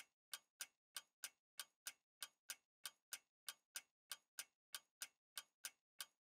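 Faint, steady ticking of a clock, about three ticks a second.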